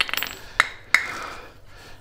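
Light clicks and clinks of PVC P-trap and drain fittings being handled and fitted under a stainless steel sink, several in the first second, then quieter.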